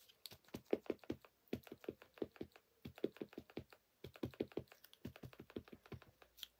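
Rapid light tapping, about five taps a second, of a Versafine Clair ink pad dabbed onto a clear stamp on an acrylic block to ink it.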